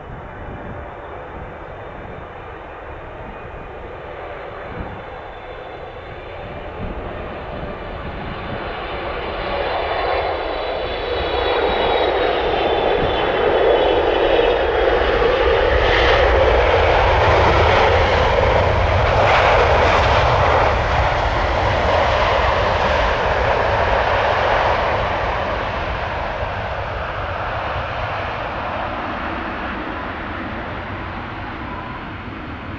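Boeing 777F freighter's twin GE90 turbofan engines on landing: a jet whine with high fan tones that rises in pitch and builds to a loud roar as the aircraft passes close and touches down, then slowly fades as it rolls out.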